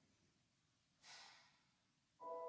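Near silence in a concert hall, broken once about a second in by a short, fading, breathy rush of noise.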